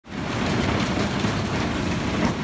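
Heavy downpour of rain and hail during a severe storm, a loud, steady hiss.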